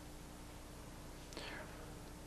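Steady hiss and low hum of an old VHS tape recording in a pause between words, with a brief soft breath-like sound about one and a half seconds in.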